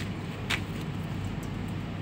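Steady low room hum with a faint hiss, broken once by a short tap about half a second in.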